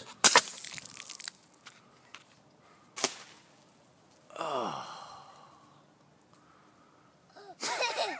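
A two-liter soda-bottle water rocket, pumped to 35 PSI, blasts off its cork launcher: a sudden loud pop with a rush of spraying water and air that fades within about a second. A sharp click follows about three seconds in, then a voice calls out with a long cry falling in pitch.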